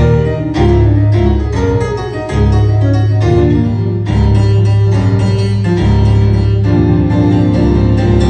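Grand piano playing jazz with a live trio, starting abruptly at full level. A steady low line runs underneath.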